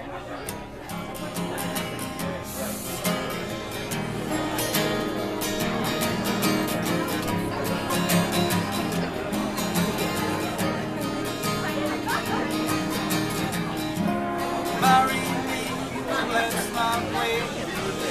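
Live acoustic guitar playing a song's instrumental introduction, with steady plucked and strummed notes.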